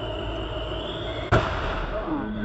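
A tyre on a Fuso truck loaded with palm kernel shells blows out with one sharp bang about a second and a half in, over steady road and engine noise.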